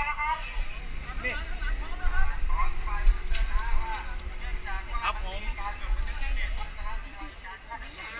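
Several people talking among a crowd of cyclists, over a low rumble of wind on a helmet camera's microphone. Two sharp clicks about half a second apart come a little over three seconds in.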